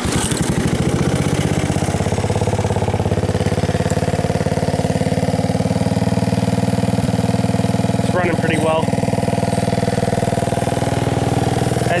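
1984 Honda ATC 200S's four-stroke single-cylinder engine idling steadily through a homemade exhaust. The note comes in abruptly and stays even, and the timing chain is not too loud now that it has been adjusted.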